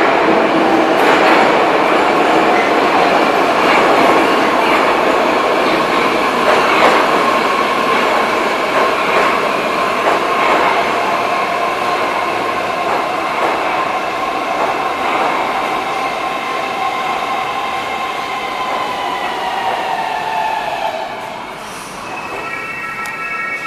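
Metro train of 81-723.1 cars pulling in along the platform and braking, with wheels knocking over rail joints. A whine from the traction drive runs under the wheel noise and slides down in pitch as the train slows. The whole sound fades as the train comes to a stop.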